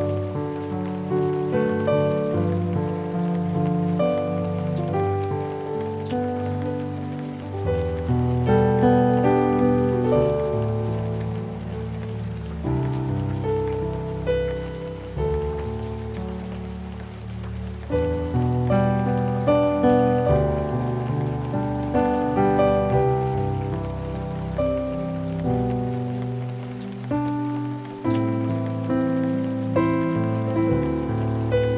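Solo piano playing a slow hymn arrangement in gentle chords and melody, over a steady recording of rain falling.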